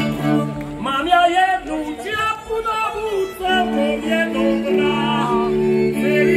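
Slovak Terchová folk band (ľudová hudba) playing: voices singing a wavering, ornamented melody in phrases over fiddles and a double bass holding long steady chords, heard through outdoor stage loudspeakers.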